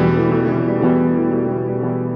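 Electric guitar, a Dunable Cyclops DE, played through the Dunable Eidolon delay/reverb pedal: a chord rings on and slowly fades in the pedal's ambience, with a light new attack about a second in.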